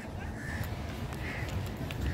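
Birds calling: two short calls about a second apart, over a steady low rumble.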